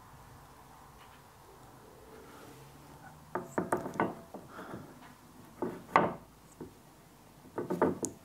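Plastic top-box mounting base being set down on a metal fitting plate and rocked against it, giving a series of short clicks and knocks that start about three seconds in. The base rocks because its holes won't line up with the plate.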